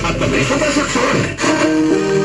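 FM radio broadcast of music playing through the ACE DP-1942 party box speaker while it tunes to a station preset. The sound breaks off briefly about one and a half seconds in and comes back as steadier, sustained music.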